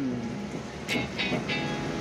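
Aquarium aerator running hard: a dense stream of air bubbles from an air stone rising and breaking at the water surface, a steady bubbling hiss.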